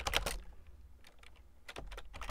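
Computer keyboard keys being typed: a quick run of key clicks at the start, a few scattered taps, then more keystrokes near the end.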